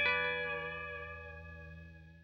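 Short guitar music sting with effects: a chord rings and slowly fades away.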